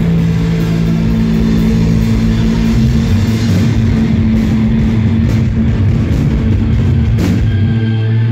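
Live rock band playing loudly: electric guitars and bass holding low sustained notes over a drum kit, with a sharp drum hit a little after seven seconds in.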